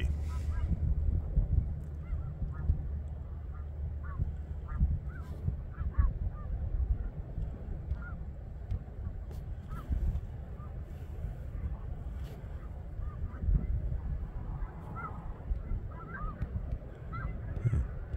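A large flock of snow geese calling from a field: a constant chatter of many distant, overlapping honks, over a low rumble.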